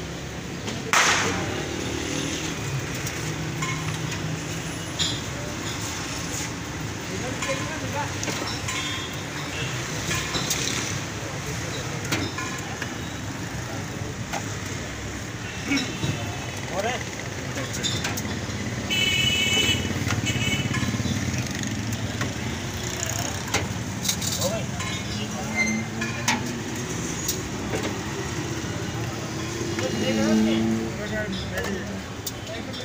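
Busy roadside food-stall ambience: steady traffic noise and unintelligible background voices, with frequent clinks and knocks of steel ladles, spoons and plates, the loudest a sharp knock about a second in. A brief high-pitched pulsing tone sounds about two-thirds of the way through.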